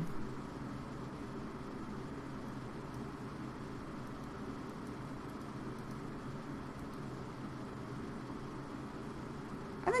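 Steady low hum and hiss of room tone with no distinct events.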